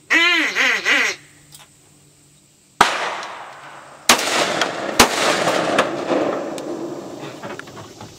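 A duck call blown in a quick run of four or five quacking notes, then three shotgun shots, spaced a little over a second and then about a second apart, each trailing off into a long noisy tail.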